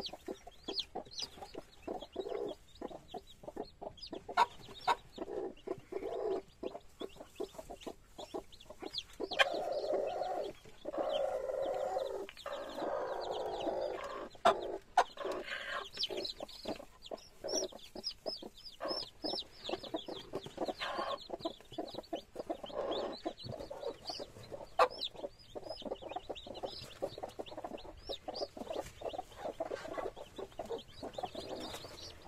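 A broody hen clucking in a straw nest, most steadily in the middle, while her newly hatched chicks peep in short high chirps. Straw rustles and crackles as hands move through the nest.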